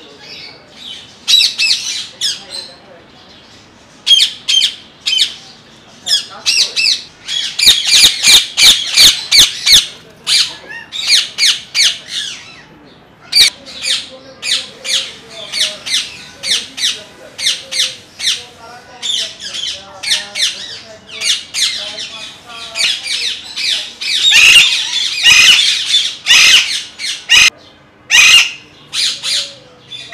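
Parakeets screeching: rapid runs of short, harsh, high-pitched squawks, several a second, in bursts with short pauses. The calls are loudest twice, about a third of the way through and again near the end.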